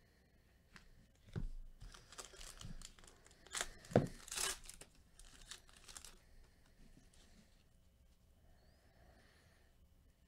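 Foil wrapper of a Topps Chrome card pack being torn open and crinkled by gloved hands, in a few bursts from just over a second in until about six seconds in, loudest near the middle, with a light knock about four seconds in.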